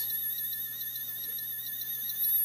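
Toy sonic screwdriver buzzing: a high electronic whine with a rapid, even warble of about ten wobbles a second, held steady.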